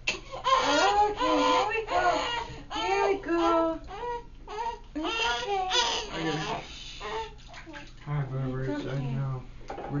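Newborn baby crying in repeated wails, each lasting about a second with short breaks. An adult's lower voice comes in near the end.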